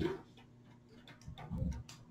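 A few scattered faint clicks and taps in a quiet room, with one short low murmur of a voice about one and a half seconds in.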